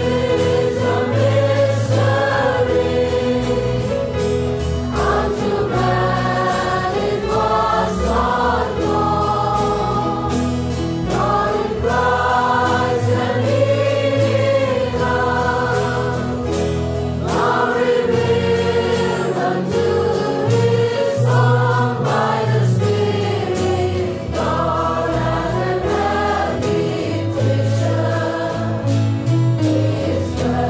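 Choir singing gospel music, many voices together with notes held for a second or two over low sustained tones.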